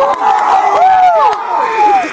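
A team of football players shouting and whooping together, several voices overlapping in long, rising and falling yells.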